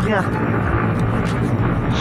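Motorcycle engine running steadily while riding, with road and wind rush on the microphone.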